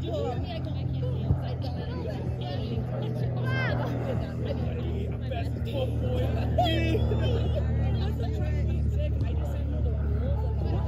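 People talking and calling out around an outdoor game, over a steady low hum. There is a single sharp knock about a second in.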